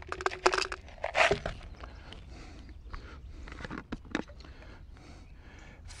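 Rock salt poured from a plastic tub into a clear bottle, the coarse crystals rattling and crunching in two short spurts in the first second and a half, followed by a few light knocks.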